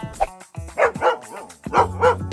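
A dog barking a few times in short, separate barks over background music.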